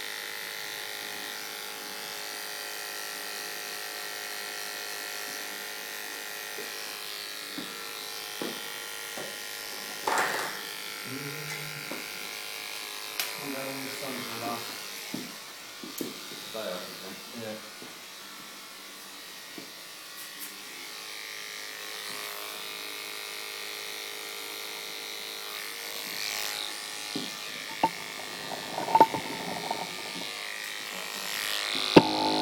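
Electric hair clippers running with a steady buzz while fading the back of the neck short.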